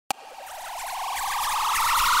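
Electronic riser: a single pulsing synth tone sliding slowly upward in pitch and growing steadily louder, after a short click at the very start.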